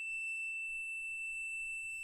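A steady, high-pitched single-tone beep from a digital multimeter's continuity tester, held unbroken because the probes are touching metal with a low resistance between them.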